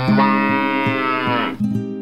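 A cow mooing: one long call that falls in pitch and stops about one and a half seconds in, over plucked guitar music.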